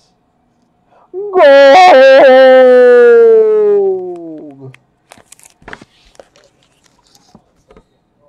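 A man's long drawn-out shout of excitement, very loud and held for about three seconds, its pitch slowly falling as it fades. Afterwards come faint light clicks and rustles of a plastic card sleeve being handled.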